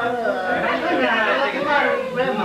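Several people talking at once in overlapping, lively party chatter.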